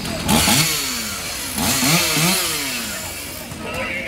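Firefighter's two-stroke chainsaw on the garage roof, revved up hard twice, each rev rising in pitch and then winding back down, while the crew cuts through the roof to ventilate the fire.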